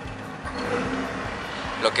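Mitsubishi Eclipse's four-cylinder engine idling steadily, a low even hum heard from inside the car's cabin.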